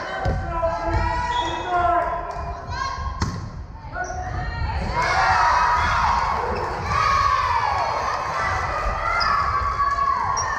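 Volleyball rally in a reverberant gymnasium: thumps of the ball being struck and players' shoes on the hardwood floor, with girls' voices calling and shouting. The shouting is loudest about halfway through.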